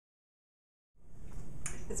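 Dead silence for about a second, then a small room's steady background hum and hiss cuts in suddenly. A woman starts speaking near the end.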